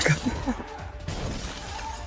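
Glass shattering in a movie trailer's soundtrack: a sharp crash right at the start, then scattering debris fading out over about a second, with music underneath.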